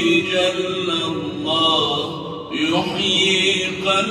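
A man's voice chanting Arabic devotions after the dawn prayer in long, melismatic held notes, with a short break and a new rising phrase about two and a half seconds in.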